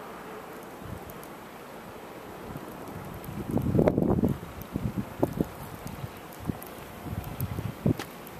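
Wind buffeting the microphone outdoors: a steady low rumble, a loud gust about halfway through, then a run of short, scattered low thumps.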